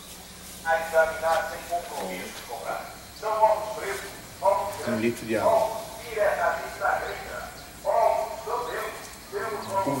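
People talking indistinctly, with no clear words.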